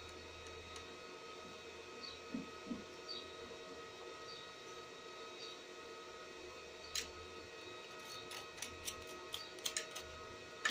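Quiet steady electrical hum, with a few light clicks of the metal window-regulator parts being handled near the end.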